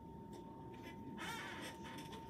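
Quiet classroom room noise with a faint steady high tone, and one brief high-pitched squeak-like sound lasting about half a second, a little over a second in.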